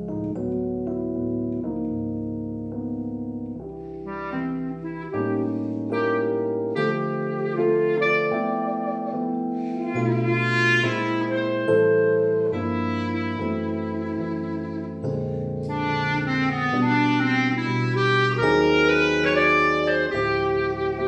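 Clarinet playing a slow ballad melody over chords on a Roland RD-800 digital piano.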